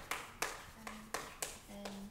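Chalk writing on a chalkboard: a quick series of sharp taps with short scratchy strokes, several in two seconds.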